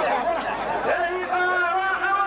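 Men's voices overlapping at first, then from about a second in a male voice chanting in long held notes, the sung delivery of qalta poetry.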